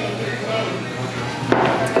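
A sharp knock about one and a half seconds in, the sound of a glass beer bottle set down on a bar counter, over a murmur of background voices.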